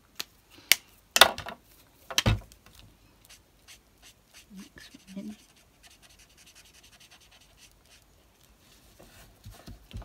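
A few sharp plastic clacks in the first two and a half seconds as an alcohol marker is handled. Then the faint, rapid scratching of the marker's nib colouring on paper card.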